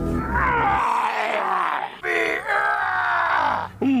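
A man groaning and grunting with strain in one long drawn-out effort, breaking into a higher, louder cry about halfway through.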